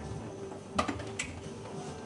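Two sharp clicks about 0.4 s apart, a little under a second in, over faint steady background tones.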